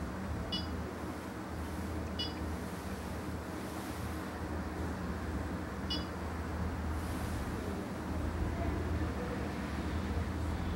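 Mettler Toledo UMX2 microbalance terminal giving three short electronic beeps as its keys are pressed: about half a second in, about two seconds in and about six seconds in. A steady low hum runs underneath.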